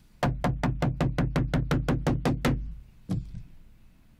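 Broadcast graphics-transition sound effect: a fast, even run of knocking ticks, about six a second, over a low bass hum, fading out after about two and a half seconds, followed by a single knock.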